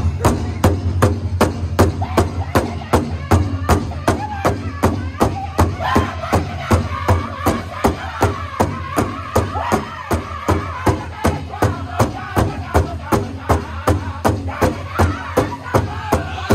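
Powwow drum group singing around a big drum: the drummers strike it together in a steady beat, about three beats a second, with high unison voices above it. The singing grows stronger from about six seconds in.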